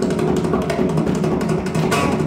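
Mridangam played in quick, dense strokes over a steady drone tone.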